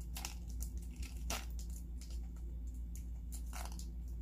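Tape being torn and pressed around a plastic Easter egg held between two plastic spoons: a few short crinkling, tearing sounds over a steady low hum.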